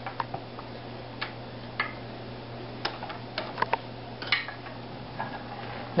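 Wooden spinning wheel running while plying yarn: a string of irregular light clicks and ticks from the wheel's moving parts, over a low steady hum.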